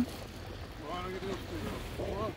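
A dog giving short, high begging whines while it waits for a treat: one about a second in and another at the end, over a steady hiss of wind and surf.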